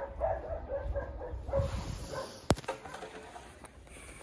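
Faint, broken whining of an animal, on and off for the first three seconds, with one sharp click about two and a half seconds in.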